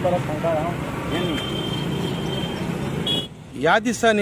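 Busy street background: steady traffic noise with scattered voices of people around, and a faint steady high tone for about a second in the middle. A little after three seconds it cuts off suddenly, and a man's clear speaking voice begins just before the end.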